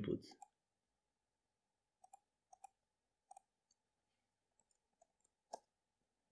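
Near silence with a few faint computer mouse clicks, about five scattered over a few seconds, the last one the loudest.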